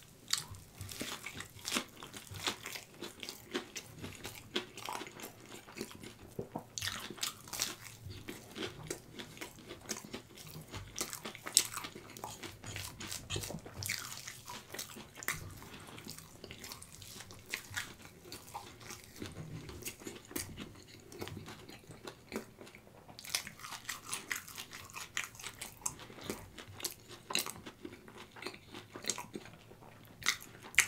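Close-miked chewing and biting of a crispy hash brown patty topped with melted stretchy cheese: irregular crunches and wet mouth clicks throughout, with one sharp, louder crunch partway through.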